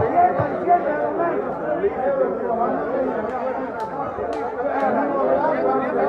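Many people talking at once in a large, reverberant hall, a steady babble of overlapping voices with no single speaker standing out, and a few faint clicks midway.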